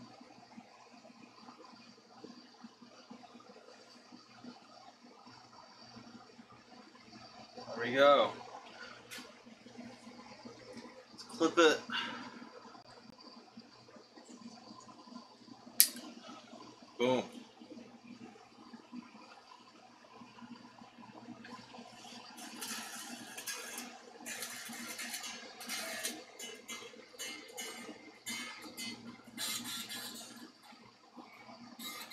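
Unamplified electric guitar being restrung: a new string plucked while it is wound up at the tuning peg, its pitch bending, three times, with a sharp click about 16 s in. Scratchy handling noise from the string and tuners fills the last part.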